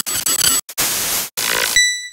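Logo-sting sound effect: bursts of harsh static that cut in and out in a glitchy stutter, then a bright bell-like chime struck near the end that rings on and fades.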